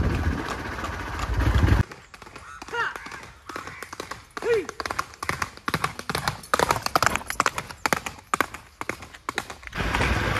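Horse hooves clopping on a paved road in quick, irregular strikes as a horse canters. For about the first two seconds a steady low engine rumble covers everything before it cuts off.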